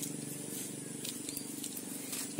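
Quiet outdoor background: a faint steady low hum of a distant motor under an even high hiss of insects, with a few faint ticks about a second in.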